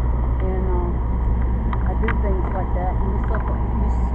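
Street traffic at an intersection: a loud, steady low engine hum from passing and waiting vehicles, with faint voices over it.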